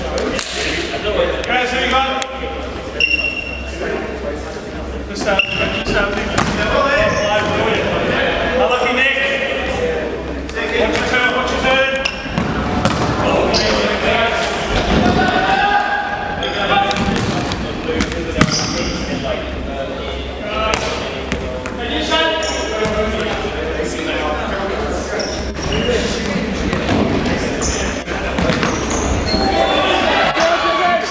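Futsal game on a wooden hall floor: players' shouts and calls, with the ball thudding as it is kicked and bounces, all echoing in a large sports hall.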